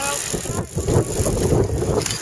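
A group of cyclocross bikes riding past close by on grass, a steady noisy mix of tyres and drivetrains, with wind rumbling on the microphone.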